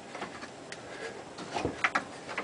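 A garbage disposal being twisted loose from its sink mount: a light click, then a few short knocks near the end.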